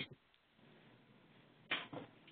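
Quiet pause on a webinar's voice line: faint steady hiss, broken near the end by one brief burst of sound.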